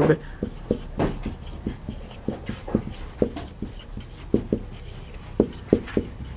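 Marker pen writing on a whiteboard: a run of short, irregular squeaky strokes, about two or three a second, as words are written.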